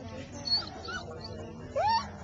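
A dog whining: a brief high squeak about half a second in, then a loud rising whine near the end, over a low murmur of people talking.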